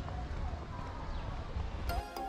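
Outdoor background noise with a low steady rumble on a small camera's microphone and faint distant voices.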